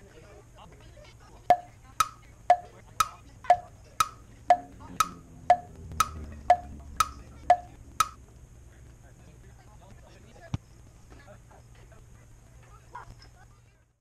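A steady tick-tock of sharp, wood-block-like clicks, two a second, alternating between a lower and a higher pitch: about fourteen in all, starting a second and a half in. One more lone click comes a couple of seconds after the run stops.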